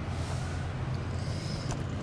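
Steady low hum and even hiss inside a car cabin, as from the running car's ventilation, with a faint click near the end.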